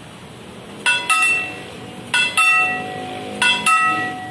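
Level-crossing signal bell (genta) on its post, its hand crank being turned, striking in pairs: three double strokes a little over a second apart, each ringing out and fading.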